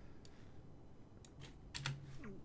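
A few faint computer keyboard and mouse clicks, scattered, with a quick pair of clicks near the end, as a text layer is resized in Photoshop.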